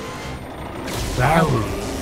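Animated racing sound effects over background music: a steady low vehicle hum, then about a second in a sudden rushing burst of noise with a short vocal cry over it.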